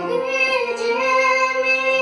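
A boy singing a Hindi bhajan melody, accompanying himself on an electronic keyboard with long held notes beneath his voice.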